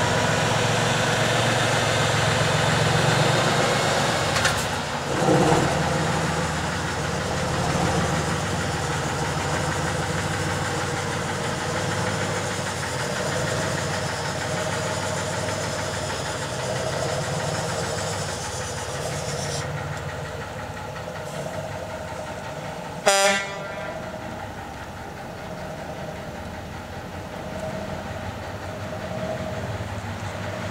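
Tatra 813 8x8 truck's air-cooled V12 diesel running steadily as the truck drives past and away, growing a little quieter in the second half. A short, loud horn toot comes about 23 seconds in.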